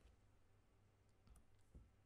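Near silence: faint room tone with a few soft clicks in the second half.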